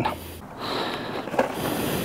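Soft rustling and handling noise as a loose chain guard is worked off a small motorcycle, with a faint click about one and a half seconds in.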